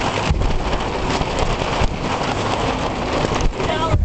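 Small open passenger boat under way in rough water: a loud, steady mix of engine noise, wind buffeting the microphone and water spray, with irregular low thumps from the hull hitting waves.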